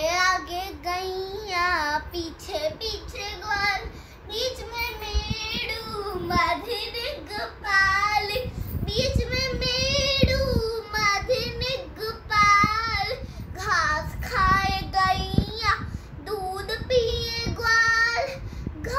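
A young girl singing solo and unaccompanied, her held notes wavering in pitch.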